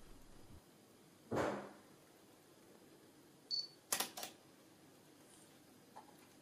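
Panasonic G3 mirrorless camera taking a shot: after a short soft rush of noise, a brief high autofocus-confirmation beep sounds about three and a half seconds in, followed at once by the shutter firing as two quick clicks.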